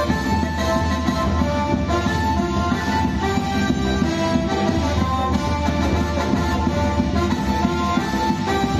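Traditional Vietnamese instrumental music: a melody of changing held notes over a continuous low accompaniment, steady throughout.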